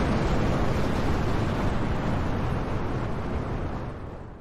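Fire-burst sound effect: a steady rush of noise with a deep rumble underneath, fading out near the end.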